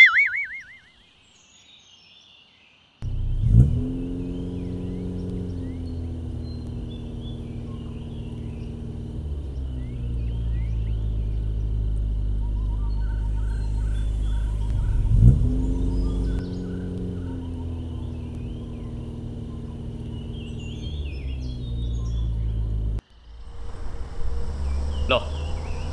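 Bus engine pulling away, revving up sharply twice, about three and a half and fifteen seconds in, each time settling back into a steady drone. It cuts off suddenly near the end. Birds chirp faintly over it.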